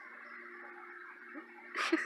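A faint steady background hum, then near the end a short breathy burst as a woman starts to laugh.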